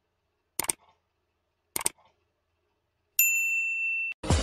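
Sound effects of a subscribe-button animation: two short clicks about a second apart, then a single high bell ding that rings for about a second near the end.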